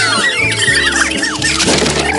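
Many high-pitched cartoon squeals from the animated snowmen, rising and falling and overlapping as they tumble through the air, over background music with sustained low notes.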